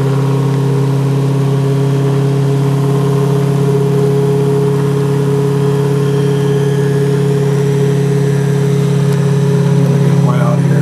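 Monopole pulse motor with an SSG-style trigger circuit running steadily at speed: a constant low hum with fainter higher tones above it.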